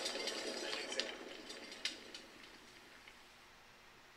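A soft breathy draw on a JUUL vape pen, fading over about two seconds with a few light clicks, then near silence as the breath is held.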